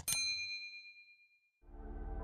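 A single bell-like ding, struck once at the start and ringing out with a few high clear tones that fade over about a second and a half. Low, soft music fades in near the end.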